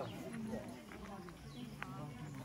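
Faint voices of people talking in the background, with a short sharp click near the end.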